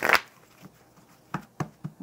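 Deck of tarot cards being shuffled: a short rush of riffling cards right at the start, then quiet with a few soft clicks and taps as the deck is handled on the table.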